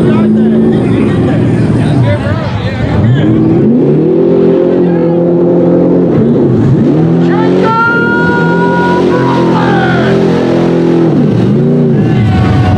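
Square-body Chevrolet mud truck's engine revving hard through a mud pit in repeated high-rpm pulls: the pitch climbs about two seconds in, holds high, dips briefly near seven seconds, climbs again, and drops off near the end.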